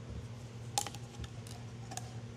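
Cured clear polyurethane resin vents and pour funnel being twisted off the top of a mold. There is one sharp snap a little under a second in, then a few lighter clicks, over a steady low hum.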